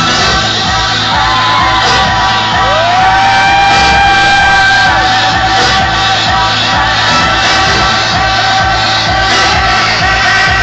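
Loud house music played over a large outdoor festival sound system with a steady beat, heard amid a dancing crowd that shouts and whoops. About two and a half seconds in, a long note slides up and holds for a couple of seconds.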